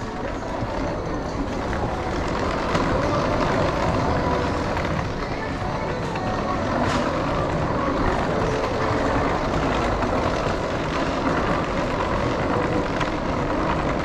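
Steady hum of a busy indoor shopping concourse, with a murmur of distant voices.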